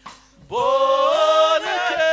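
Gospel singing in a church service. After a brief pause, voices come in about half a second in with a note that scoops upward and is then held.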